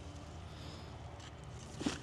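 Quiet background with a faint steady low hum, then a short rustle near the end as a pulled potato plant, leaves and stems, goes into a plastic bucket.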